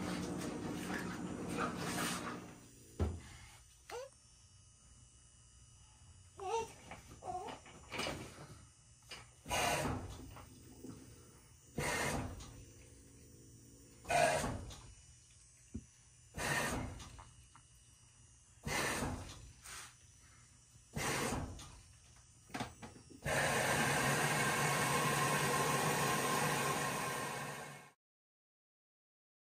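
LG front-loading washing machine at the start of its cycle, the drum turning in short spells with a wash of water and clothes about every two seconds, then a steady rushing noise for the last few seconds that cuts off at the end.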